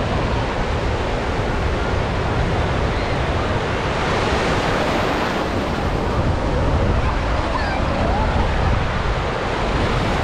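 Shallow sea surf breaking and washing in over sand and around the microphone, a steady rush of foaming water that swells about halfway through as a wave comes in. Wind buffets the microphone with a low rumble.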